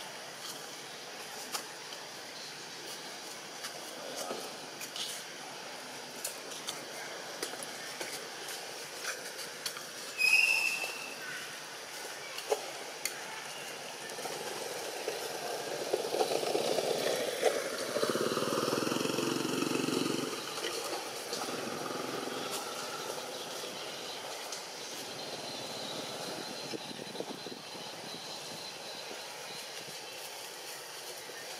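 Outdoor ambience with a steady hiss and scattered small clicks. A single short, high-pitched squeak comes about ten seconds in, and a motor vehicle passes, swelling and fading about halfway through.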